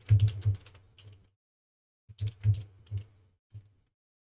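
Computer keyboard being typed on in two quick runs of keystrokes, each about a second long, with a single keystroke near the end.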